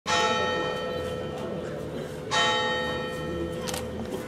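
Tower bell striking twelve o'clock: two strokes about two seconds apart, each ringing on and slowly fading.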